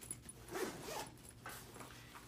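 Zipper on the top compartment of a backpack being pulled open, a scraping zip in short, uneven runs.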